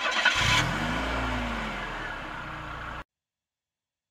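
Car engine sound effect: the engine starts and revs, its pitch rising and then falling, fading and cutting off suddenly about three seconds in.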